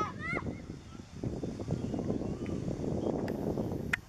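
Young footballers shouting high-pitched calls on the pitch over steady outdoor noise, the loudest calls about a second in; a sharp knock near the end, a player striking the ball with a shot.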